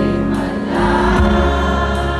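Live rock band with electric guitar, keyboard, bass and drums playing, with many voices singing together: the crowd singing along with the band.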